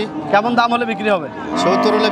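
A cow mooing: one held, steady call that starts about one and a half seconds in, over men talking.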